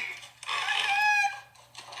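A high-pitched voice giving one long, slightly wavering call of about a second.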